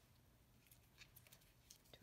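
Near silence with a faint low room hum; in the second half come a few soft, short paper rustles and ticks as small paper flower cutouts are handled on the table.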